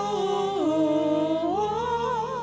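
A voice humming a slow, wordless hymn melody in long held notes, stepping down about half a second in and back up near the end, over a soft steady accompaniment.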